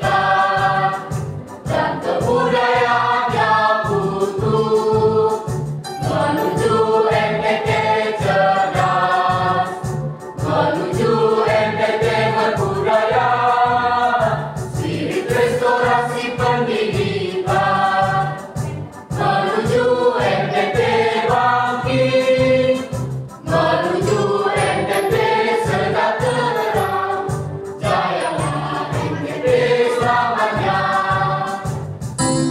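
Mixed choir of teenage boys and girls singing in sung phrases of a few seconds each, with short breaks between, over a steady low pulsing beat.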